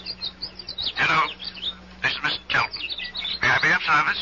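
Quick, high bird chirps in the first second, then snatches of a person's speech.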